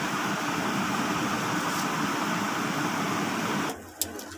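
A steady rushing noise, as from a running electric fan, which stops abruptly near the end.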